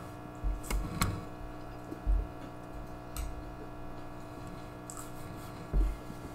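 Close-miked chewing of a big mouthful of pad thai rice noodles: scattered soft wet mouth clicks and a few low thumps.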